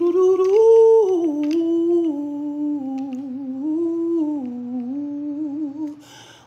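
A man humming a slow, wordless melody in one long unbroken phrase. It rises near the start, then wanders down in small steps and stops at the very end.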